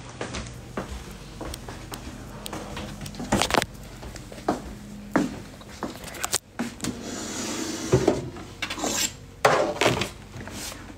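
Someone rummaging through a closet: scattered knocks, clicks and rustles as things are moved about, with a longer stretch of rustling about seven to eight seconds in.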